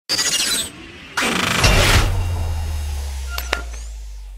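Logo-intro sound effects: two noisy swooshes, the second ending in a deep boom that slowly fades. Two short, sharp ringing clicks come near the end.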